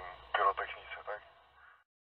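A man's voice speaking a few more words, trailing off. The sound then cuts off abruptly into total silence near the end.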